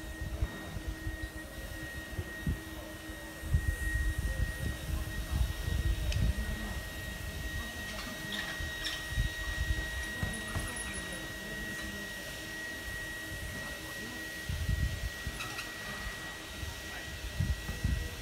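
Electric blower running steadily with a thin high whine and a lower hum, the kind that inflates and keeps up the pressure in a pneumatic field tent. Wind buffets the microphone in low rumbling gusts, strongest a few seconds in and again near the end.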